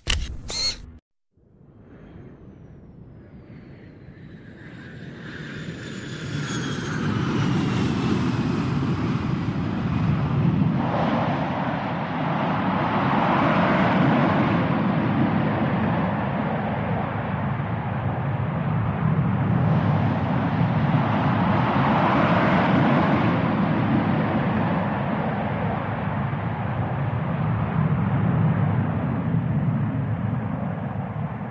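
Aircraft engine noise: a whine that falls in pitch over the first several seconds while a steady roar builds up, then holds, swelling twice. It follows a short loud intro sound that cuts off in the first second.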